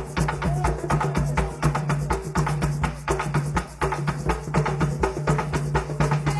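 Afro-Venezuelan San Juan drums (tambores de San Juan) playing a fast, dense, steady rhythm of drum and wooden strikes, without singing.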